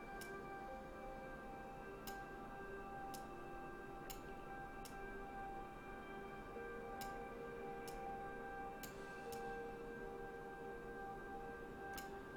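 Quiet background music of steady held tones, with faint single clicks every second or so at irregular intervals, typical of computer-mouse clicks while selecting and moving vertices.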